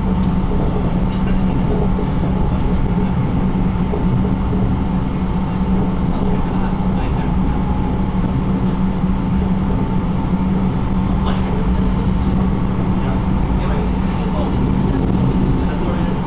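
Tram running along a city street, heard from inside the car: a steady rumble with a faint, constant whine above it.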